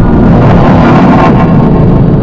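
Loud, heavily distorted rumbling noise of a 'G Major'-style edited soundtrack, holding steady at full level, with a faint tone fading out about half a second in.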